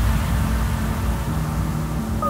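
Synthesized intro sound effect: a deep, steady rumble with a hiss of noise over it and a low held hum, part of an electronic intro track.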